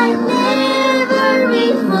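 Children singing a Christian worship song into a microphone, the voice gliding between notes over steady sustained backing music.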